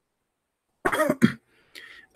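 A man coughing to clear his throat, a short two-part cough about a second in.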